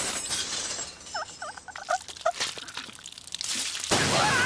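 Cartoon sound effects of a water tap bursting: a sudden rush of noise at the start, a run of short chirps in the middle, then a loud rushing burst of spraying water near the end.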